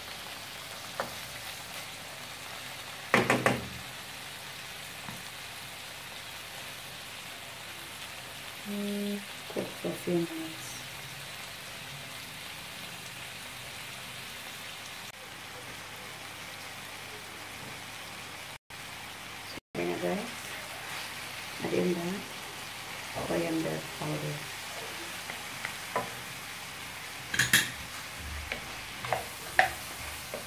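Chicken pieces and sliced onions frying in a pan with a steady sizzle. A wooden spatula now and then knocks and scrapes against the pan as the chicken is stirred.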